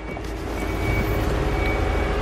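Power window motor in a 2006 Volkswagen Passat's driver-side rear door running and lowering the glass. Its steady whine sets in just after the start and holds, over a low rumble.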